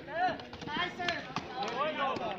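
Shouting voices from the kabaddi players and onlookers as a raider is tackled, with a couple of sharp slaps or knocks about a second in.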